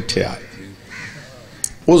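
A man's amplified speech through a microphone breaks off after a moment and resumes near the end. The pause between holds only faint background sound and one brief click.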